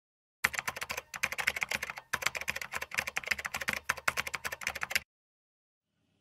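Fast typing on a computer keyboard: a dense run of key clicks that starts about half a second in, pauses briefly twice in the first two seconds, and stops about a second before the end.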